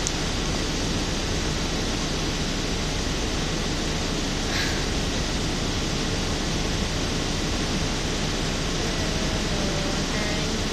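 Steady, even rushing background noise with no speech, at a constant level throughout.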